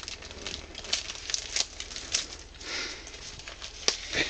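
Thin plastic bag crinkling and rustling in irregular crackles as hands pull and twist it, working to open a wrapped egg-drop package.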